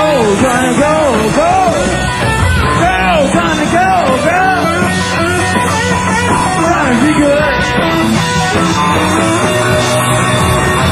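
Live blues-rock trio playing loud. An electric lead guitar plays a run of notes that are bent up and let back down, one after another, over bass and drums.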